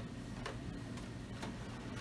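Faint ticks, about one a second, over a steady low hum.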